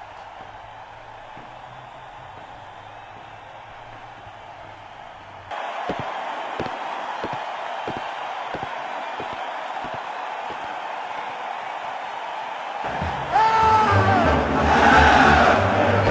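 Footsteps on a hard floor at a steady walk, about two to three a second. About 13 seconds in, loud chanting and singing voices, like a football crowd, come in.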